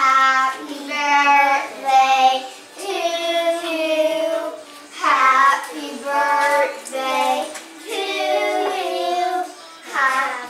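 Singing in a high, child-like voice, a string of held notes that change pitch every half second or so.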